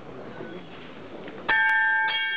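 Small bell on a procession throne struck once about one and a half seconds in, ringing on with a clear, bright tone over a low crowd murmur. It is the throne bell that calls the order to the bearers.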